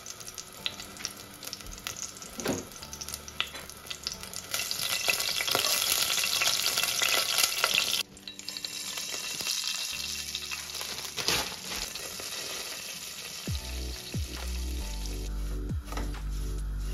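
Hot clarified butter (ghee) sizzling in a stainless steel pot, with whole cardamom pods frying in it. The sizzle swells about four seconds in, drops suddenly about eight seconds in, then carries on quieter.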